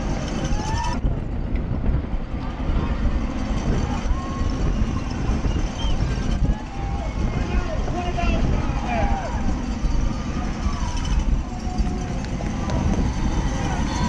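Steady wind rush on a racing cyclist's camera microphone inside a fast-moving criterium bunch, with spectators' shouts and cheers from the barriers heard over it throughout.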